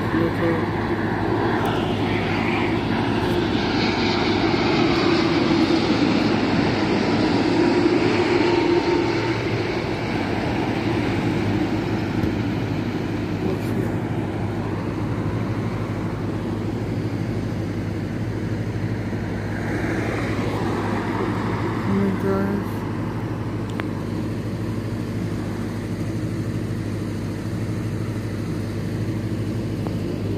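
Jet airliner on final approach, a rushing engine drone over a steady low rumble that swells for several seconds near the start and again around two-thirds of the way through.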